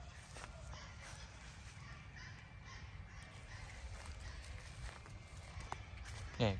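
Faint outdoor background with a few faint, distant bird calls and a small click near the end.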